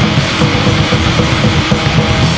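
Grindcore/powerviolence band playing: heavily distorted guitars over fast, dense drumming, loud and continuous.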